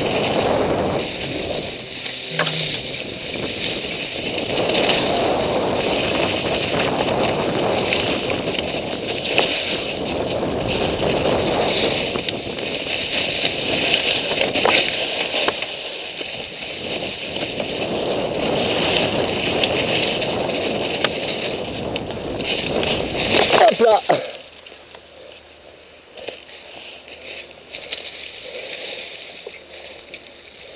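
Mountain bike ridden downhill over a dry, leaf-covered forest trail: the tyres rolling through the leaves, with the bike rattling over bumps and wind rushing over the camera. The noise cuts off suddenly about 24 seconds in, when the bike stops, leaving only faint rustling.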